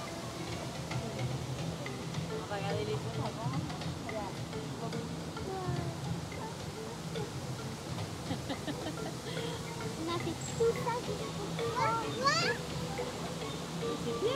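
Indistinct voices with music in the background, over a steady low hum.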